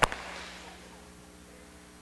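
A congregation's single clap in unison: one sharp crack at the start with a short room echo dying away over about half a second, then steady room hum.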